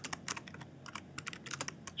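Keystrokes on a computer keyboard: a quick, uneven run of key clicks, several a second, as a line of text is typed.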